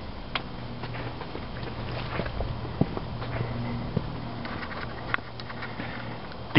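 Footsteps crunching on coal and gravel, irregular light steps about once a second, over a steady low hum.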